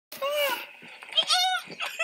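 Two high-pitched squeals from a person's voice, each about a third of a second long and arching up and down in pitch.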